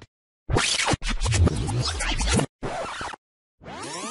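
Intro sound effects: a run of abruptly chopped, scratch-like bursts with short gaps between them. Near the end a sweeping whoosh begins.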